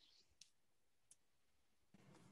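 Near silence, with two faint short clicks less than a second apart.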